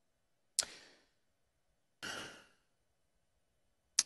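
A pause at a lectern microphone: a single sharp click about half a second in, then a short breath about two seconds in.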